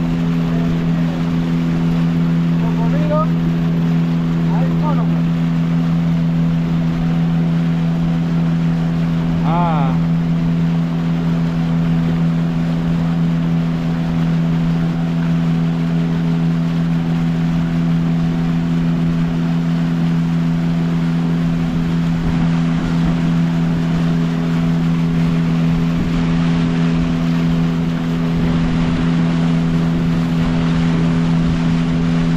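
Outboard motor driving a wooden dugout canoe at a steady cruise: an even, unchanging drone, with water rushing at the bow.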